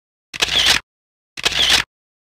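Camera shutter sound effect, twice, about a second apart, each a short snap with total silence around it.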